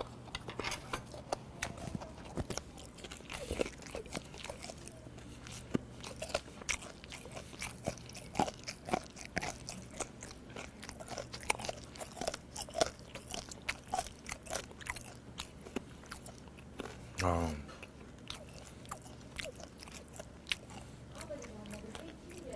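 Close-up chewing of fermented skate (hongeo), its cartilage bones giving many sharp crunches throughout. A short hum from the eater comes about 17 seconds in.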